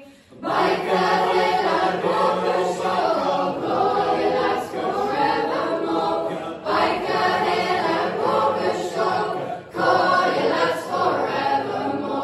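Large mixed youth choir singing together. After a brief quiet moment, the full group comes in about half a second in, and the singing dips briefly about six and a half and ten seconds in.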